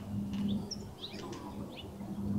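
Birds chirping in short, scattered calls over a steady low hum.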